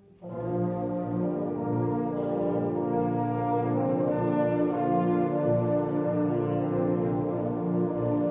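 A secondary-school concert band playing a loud passage of sustained chords with the brass prominent, the full band coming in together after a momentary break right at the start.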